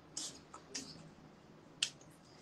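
About four short, sharp clicks and slaps of hands meeting during sign language, the sharpest and loudest near the end, over faint room hiss.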